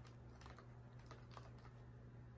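Faint, irregular soft clicks and scratches as wool is rolled with dowels and pulled off a blending board's wire carding cloth, over a steady low hum.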